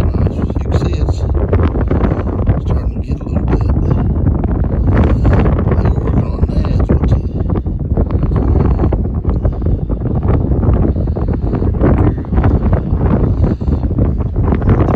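Wind buffeting the microphone: a loud, continuous, gusting rumble.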